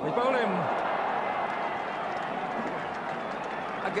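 Cricket crowd erupting in cheers and shouts as a wicket falls, breaking out suddenly with a loud falling shout at the start and then holding on as a steady roar.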